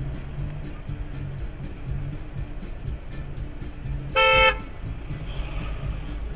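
A car horn gives one short blast, under half a second, about four seconds in. It is the loudest sound here, over background music with a steady beat.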